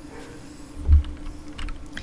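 A few computer keyboard keystrokes, with one dull low thump about halfway through, over a steady low hum.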